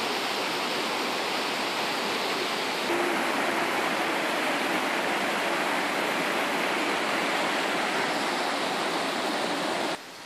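Rushing water of a stream running over rocks, a steady rush that gets slightly louder about three seconds in.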